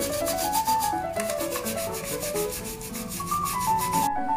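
A toothbrush scrubbing the mesh of a plastic tea strainer in a fast run of short scratchy strokes, with a brief pause about a second in. Background music plays underneath.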